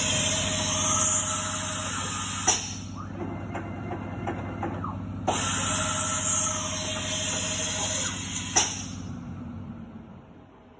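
Tool carousel of a Brother CNC tapping center indexing twice, each move about three seconds, driven by a closed-loop stepper motor through a 5:1 gearbox: a motor whine that ramps up and down over a hiss, ending in a clunk as the carousel stops. It indexes faster than before the gearbox without overloading the stepper. A steady machine hum runs underneath and fades near the end.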